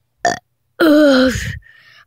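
A person burping: a short vocal blip, then one loud, long burp with a falling pitch about a second in.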